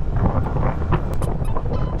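Steady wind rush on the microphone from a Yamaha R15 motorcycle cruising at about 55 km/h, mixed with engine and road noise.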